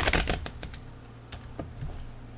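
A deck of tarot cards being shuffled by hand on a table: a quick rush of card clicks in the first half second, then a few scattered soft taps as the cards are squared into a pile.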